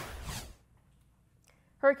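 A short whoosh sound effect for an animated news-graphic transition, fading out about half a second in. A woman starts speaking near the end.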